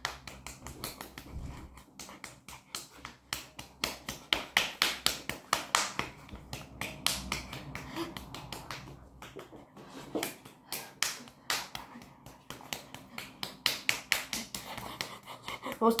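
A person clapping their hands rapidly and continuously, about five claps a second, as fast as they can in a timed attempt at as many claps as possible in one minute.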